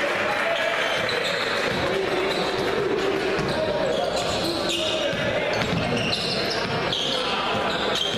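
Basketball dribbled on a hardwood gym floor during a game, over the steady noise of the crowd and voices in the hall.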